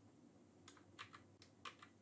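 Near silence broken by a few faint, scattered clicks of computer keyboard typing.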